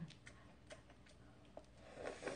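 Near silence with a few faint, scattered clicks: soft mouth sounds of a person eating an orange wedge.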